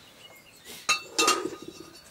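A metal spoon clinking and scraping against a stainless steel plate as food is scooped up, a few sharp clinks close together about a second in, each with a short ring.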